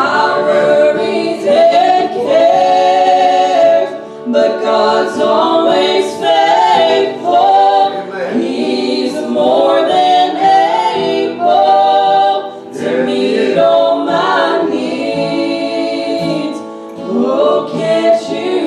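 A small vocal group singing a gospel song together into microphones, several voices in harmony on held notes, with short breaks between phrases.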